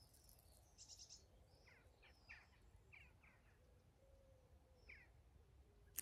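Near silence with faint bird chirps: a handful of short, falling chirps scattered through the quiet.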